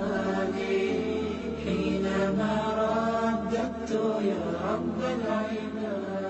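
Chanted vocal music: a sustained, melodic voice line held over a steady low drone.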